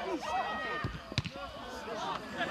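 Players' shouts on an outdoor football pitch, with one sharp thud of the ball being kicked a little over a second in.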